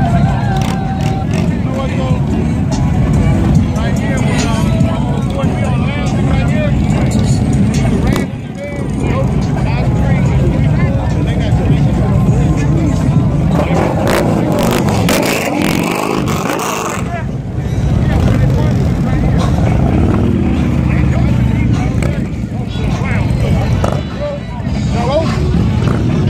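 Harley-Davidson touring motorcycles' V-twin engines idling with a low, pulsing rumble, revved louder for a few seconds around the middle, with voices of a crowd over them.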